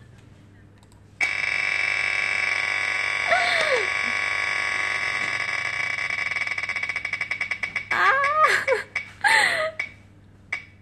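A Wheel of Names spinning-wheel tick sound effect playing through a laptop's speakers. A rapid run of clicks starts about a second in, then slows into separate ticks and stops near eight seconds as the wheel comes to rest. A woman gives short excited cries partway through and again after the wheel stops.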